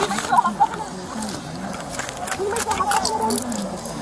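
Untranscribed voices and scuffling during an arrest, with several sharp metallic clicks of handcuffs being put on a person's wrists.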